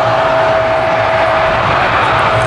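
Twin-engine jet airliner on final approach: a steady engine tone over a continuous roar. Wind buffets the microphone.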